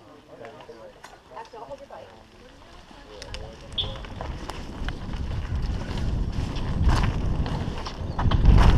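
Helmet-mounted camera on a mountain bike descending a dirt trail: a low rumble of wind on the microphone and tyres on dirt builds from about three seconds in as speed picks up. Sharp clicks and rattles from the bike run through it, with faint voices in the first seconds.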